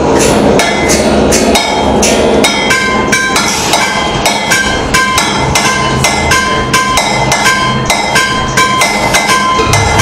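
Amplified homemade spring instrument struck and worked in a noise-art piece: rapid clanking hits, several a second, over a dense low drone. From a few seconds in, short ringing pitched tones come and go above it.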